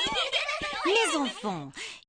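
Several young girls' voices chattering and giggling excitedly at once, with no clear words, overlapping. About a second in, a single voice rises and falls in pitch before the sound fades near the end.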